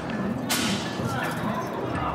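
A single sharp crack about half a second in, fading quickly, over the steady background noise of people and traffic in an open square.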